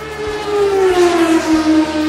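Vehicle pass-by sound effect: an engine-like pitched tone slides steadily down as it goes by, loudest about a second in, over a steady low background bed.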